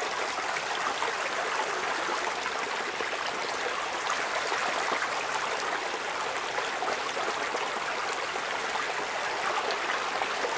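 Field recording of rain falling on pavement: a steady, dense patter with trickling water, like plant pots filling up. It plays with little low end, while an equalizer trims its upper mids by a couple of decibels.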